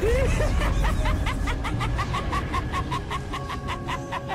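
High-pitched cackling laugh, a quick even run of about six 'ha' pulses a second, over intro music.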